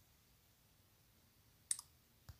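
Near silence, broken about three-quarters of the way in by one short, sharp double click.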